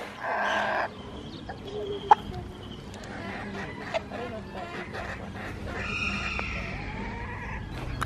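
Domestic poultry calling on a lawn: one loud, harsh call right at the start, then softer scattered calls and a sharp click about two seconds in.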